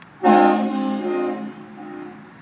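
Air train horns sounding one blast, fired from a remote momentary switch: a chord of several pitched tones that starts abruptly and holds for about a second and a quarter, then drops to a weaker tail. A faint click comes just before the blast.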